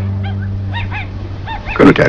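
A series of short, high whimpering cries, each rising and falling in pitch, over a steady low hum, with a louder cry near the end.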